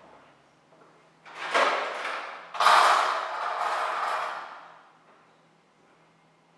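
A heavy wooden door being opened by its lever handle and swinging on its hinges: two rushing, noisy sounds, the second louder and longer, fading away by about five seconds in.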